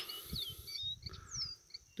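Caboclinho seedeater giving short, faint whistled notes, each sliding down in pitch, about one every half second. The last note, near the end, starts higher than the rest.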